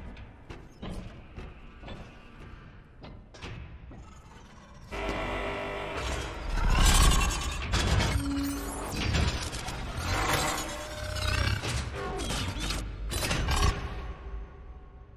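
Film sound effects of a mechanical training robot with bladed arms swinging and working. It starts quiet with a few scattered clicks. About five seconds in it turns into a loud, dense run of metallic clanks, whirs and impacts, which stops abruptly just before the end.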